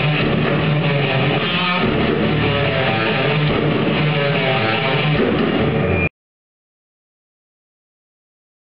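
Live rock band playing, with electric guitars and drums, recorded from the audience; the music cuts off suddenly about six seconds in.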